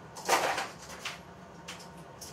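Small plastic and metal lure parts handled by hand on a workbench: a brief rustling clatter about a third of a second in, then a lighter click about a second in.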